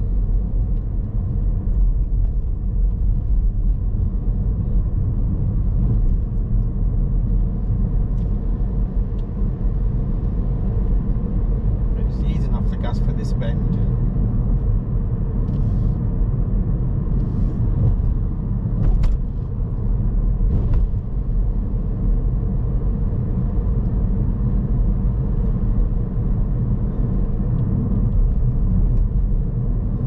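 Steady low rumble of a car's engine and tyres heard from inside the moving cabin.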